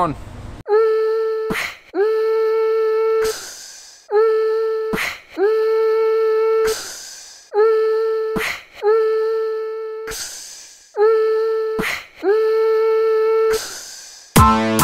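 Electronic sound-design intro: a single sustained synthetic note of one steady pitch sounds about seven times, each lasting a second or so, and alternates with short whooshing hits.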